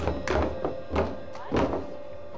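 Wooden clogs stamped on a stage floor: about five separate knocks, irregularly spaced, over a steady ringing tone left over from the drum kit.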